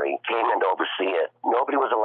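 Speech only: a man talking without pause, his voice thin with no treble above the midrange.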